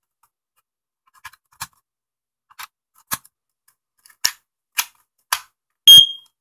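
Sharp plastic clicks and snaps, about half a dozen, as batteries are pressed into a First Alert smoke and carbon monoxide alarm's battery drawer and the drawer is shut. Just before the end the alarm gives one short, loud, high-pitched beep, its power-up signal on getting fresh batteries.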